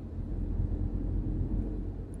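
Car interior noise while driving: a steady low rumble of road and engine heard inside the cabin.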